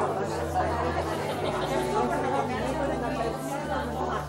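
Chatter of several people talking at once, indistinct, over a low bass line whose notes change about once a second.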